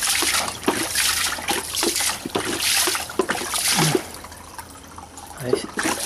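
Water splashing and bubbling in a home fish tank as a plastic bottle is worked through it during cleaning. The sound comes in uneven bursts and drops away for a moment about four seconds in.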